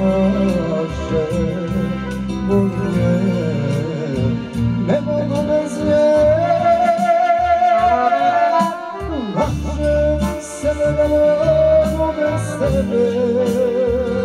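A male singer performing a Serbian folk (narodna) song live, accompanied by accordion and an electronic keyboard, with a steady bass and rhythm underneath. He holds long, wavering notes. The bass and rhythm drop away briefly a little past the middle, then come back.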